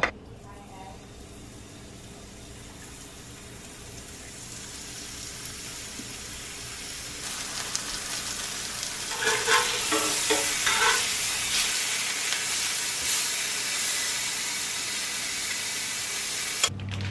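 Seasoned chicken breasts frying in hot olive oil in a cast-iron skillet. The sizzle starts faint and grows steadily louder over the first half, with a few short, sharper sounds about nine to eleven seconds in.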